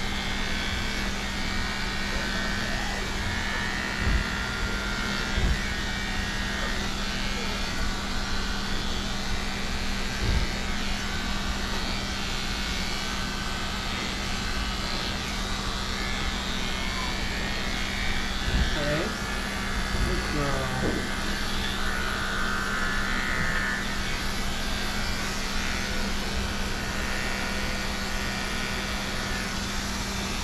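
Corded electric dog-grooming clipper running with a steady hum as it is worked through a dog's coat, with a few soft knocks along the way.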